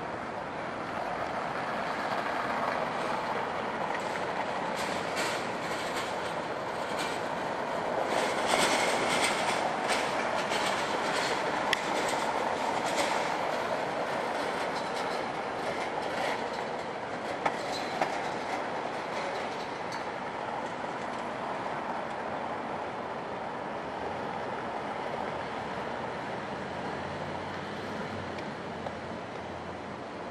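A passing vehicle rattling along the street: a steady rush that swells about eight seconds in, with a quick run of rattling clicks through the middle, then slowly fades.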